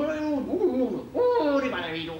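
A man's voice giving drawn-out, wordless "oh" cries, about three in quick succession, with the pitch sliding up and down, like straining during incline-bench sit-ups.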